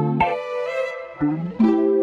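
Instrumental music with no vocals: sustained chords that change about a fifth of a second in and again about a second and a half in, with a brief dip in loudness before the second change.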